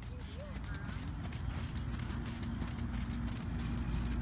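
A horse's hooves beating at a trot on sand arena footing: a continuous run of clip-clop hoofbeats.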